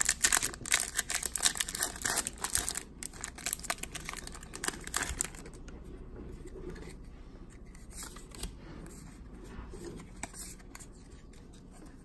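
Foil wrapper of a Pokémon trading-card booster pack being torn open and crinkled for the first few seconds. This gives way to softer rustling as the cards are drawn out and handled.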